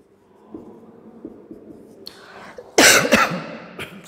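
Faint marker strokes on a whiteboard, then a man coughs loudly about three seconds in, with a shorter second burst just after.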